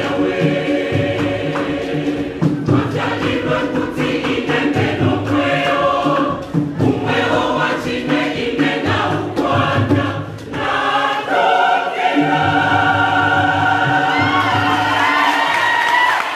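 Church choir singing a gospel song in harmony over a beating drum, ending on a long held chord in the last few seconds.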